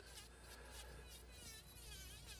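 Faint, high whine of a Dremel rotary tool's small motor, wavering in pitch, barely above near silence.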